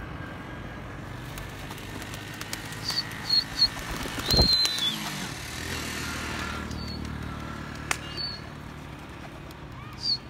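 Short high bird chirps, several in a row about three seconds in and a few more later, over a low steady engine hum, with one dull thud about four seconds in.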